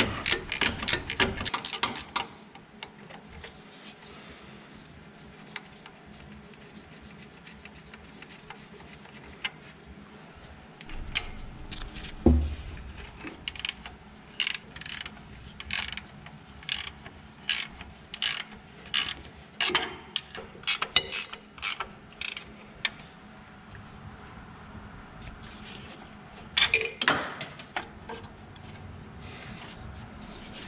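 Wrench working a bolt loose on a power steering pump bracket: short bursts of metallic clicking and ratcheting, with a quiet stretch early on and then many clicks in a row through the middle.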